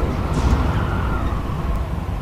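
Storm wind sound effect: a loud, steady rush of strong wind.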